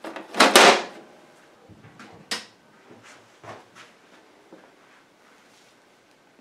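Plastic clunks and knocks from the casing of a Xerox Phaser 8500 printer being handled: one sharp, loud clunk about half a second in, then a few lighter knocks over the next few seconds.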